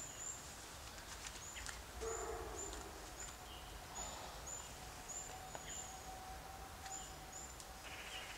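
A small bird calling: a run of short, very high, thin notes, roughly two a second, with a few faint clicks among them.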